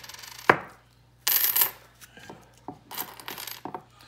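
Wheat pennies tipped out of an opened paper coin roll onto a wooden table, clinking against each other and the tabletop in several short bursts, with one sharp clack about half a second in.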